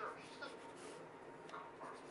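Coloured pencil scratching faintly across a painted sketchbook page in short, irregular shading strokes.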